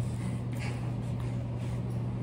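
Steady low hum of room background, with a faint soft rustle about half a second in.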